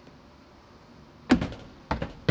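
Two sharp knocks about half a second apart near the end, from a clear plastic storage container with an air purifier fitted into its end being handled and knocked about.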